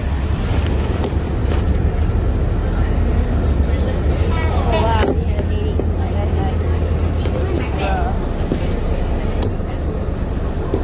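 City bus engine running, a steady low rumble heard from inside the passenger cabin, with brief voices about four seconds in and again near eight seconds.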